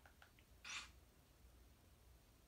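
Near silence: room tone, with one short, faint hiss about two-thirds of a second in.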